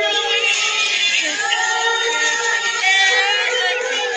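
A group of children singing a pop song together over a karaoke backing track, their separately recorded voices layered into one chorus with held notes.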